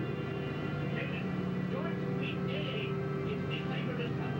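A submarine dark ride's onboard soundtrack heard from inside the cabin: a steady low hum and drone with faint music, and a few faint voice-like sounds between about two and four seconds in.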